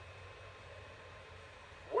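Faint, steady background noise with a low hum; no distinct event.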